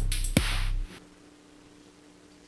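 Electronic drum beat: one kick-drum hit with a falling pitch over a bed of cymbal hiss and bass, cutting off abruptly just under a second in. After that only a faint steady electrical hum remains.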